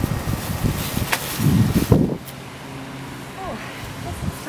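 Wind buffeting the microphone outdoors, an irregular rumble with a few sharp clicks, for about two seconds. It then drops off sharply to a quieter, steady low hum.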